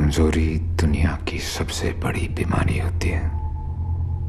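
A voice speaking for about three seconds, then stopping, over a steady low drone of background film score.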